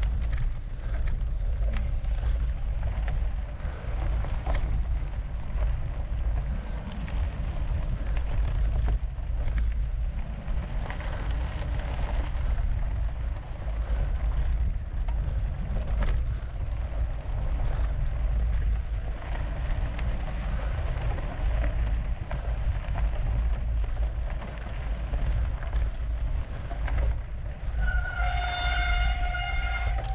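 Mountain bike rolling fast over a sandy forest trail, with heavy wind rumble on the microphone and scattered clicks and knocks from the tyres and frame. Near the end, a held pitched tone with several overtones sounds for about two seconds.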